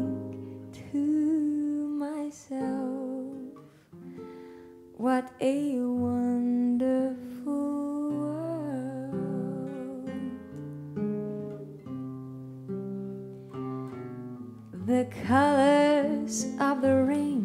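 A slow jazz ballad: a woman singing in long, gliding phrases over a fingerpicked classical guitar, with guitar notes ringing on alone between her lines.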